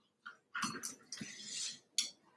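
Slicker brush worked through a knot in a Cavoodle's curly coat: a few short, scratchy strokes, then a sharp click near the end as the brush is put down on the table.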